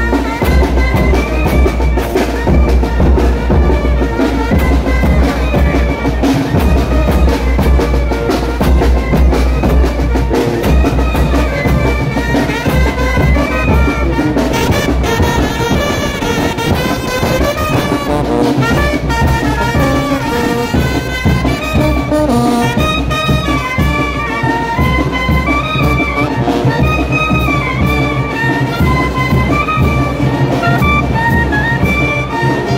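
A Mexican brass banda playing a traditional chinelo son live: trumpets and clarinets carry the melody over sousaphone bass, a bass drum and a snare.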